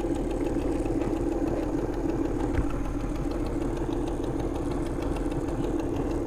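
A boat's outboard motor idling with a steady, even hum.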